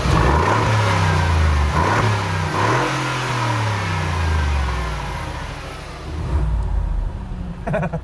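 Mercedes G 500 4x4² twin-turbo V8 revved hard through its side-exit exhausts. The pitch climbs and falls about three times, with a last burst of throttle near the end.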